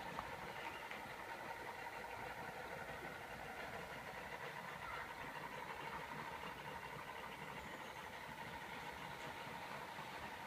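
A faint, steady mechanical hum, like an engine idling, over a low rumbling background.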